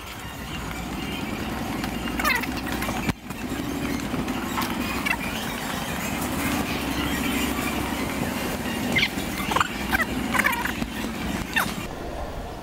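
Wheels of a loaded trolley rolling over a concrete warehouse floor: a steady rumble and rattle carried up through the box the camera rests on, with a brief dip about three seconds in.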